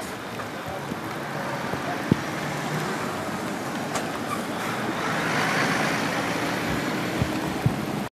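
Steady motorway traffic noise, with tyres hissing on a wet road. It swells as a vehicle passes about five seconds in, and a few short knocks sound over it.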